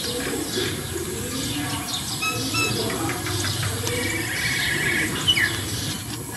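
Small birds chirping: scattered short high chirps, a quick trill about four seconds in, and a brief falling call near the end, over a steady faint outdoor background.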